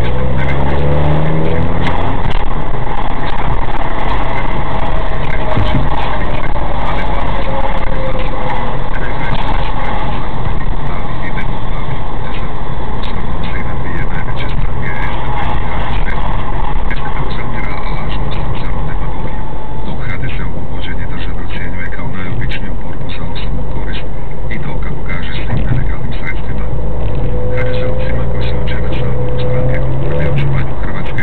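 Car engine and road noise heard from inside the cabin while driving. The engine's pitch rises as it accelerates in the first couple of seconds and again near the end.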